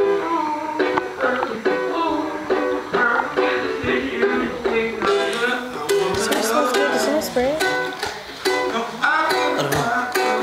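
Live acoustic jam: a strummed stringed instrument keeps a steady rhythm while voices sing along.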